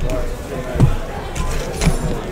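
Cardboard trading-card boxes handled on a table: two dull thumps about a second apart, with a brief rustle of plastic wrapping just before the second, over background chatter.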